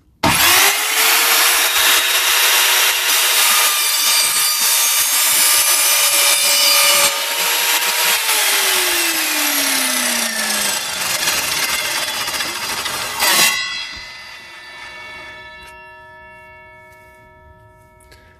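Evolution R210SMS sliding mitre saw running at full speed, its 210 mm tungsten-carbide-tipped blade cutting through plastic pipe, loud throughout. Its pitch falls partway through. It cuts off suddenly about 13 seconds in, then fades away.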